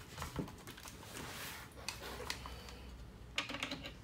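Scattered light clicks and knocks of tool handling, with a faint rustle: a cordless drill being picked up and brought to a plastic transducer mount. The drill motor is not running.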